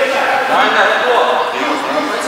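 Men's voices talking, speech with no other clear sound standing out.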